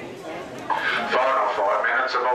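Spectators' voices at a sports ground. Low chatter at first, then from under a second in, loud raised voices shouting without clear words.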